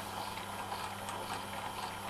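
Chinese 550 W mini drill-mill running steadily in reverse, its motor and head gearing giving an even mechanical hum as the spindle turns.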